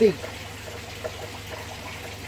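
Steady trickle of running water from aquarium filtration, over a low steady hum.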